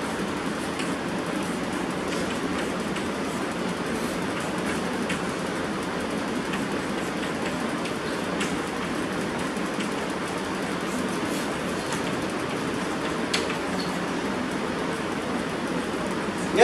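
Chalk on a blackboard: irregular faint taps and scratches as an equation is written, one tap a little louder near the end, over a steady rushing background noise.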